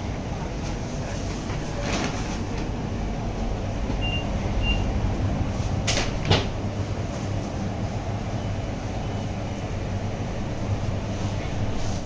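Steady low rumble and hum of a shop interior, with a few knocks and two short high beeps about four seconds in.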